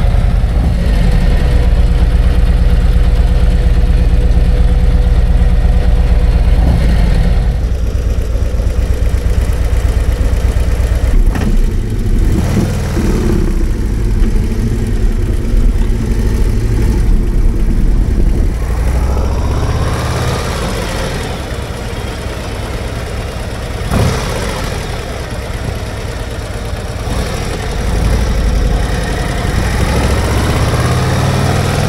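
Harley-Davidson Road Glide's V-twin engine idling steadily for the first several seconds, then the bike under way, the engine note rising twice as it accelerates. A single sharp knock sounds about two-thirds of the way through.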